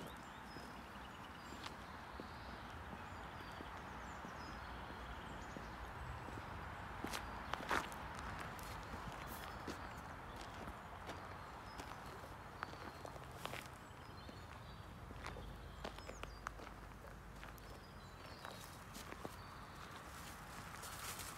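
Faint footsteps of a person walking on a paved road and dirt verge, a steady low hiss with scattered clicks, the loudest about eight seconds in.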